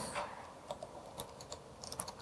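A handful of faint computer-keyboard keystrokes, irregularly spaced, as a command is typed into a terminal.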